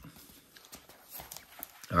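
Faint rustling and a few light knocks as a flashlight is pushed into a nylon belt holster and the flap is folded shut.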